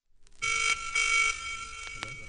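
A telephone ringing: one double ring, two short rings close together, its tone lingering faintly after, with a click near the end.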